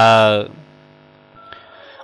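A man's news narration, in Hmong, ending on a drawn-out word about half a second in, then a pause holding only a faint steady hum with a brief higher tone near the middle.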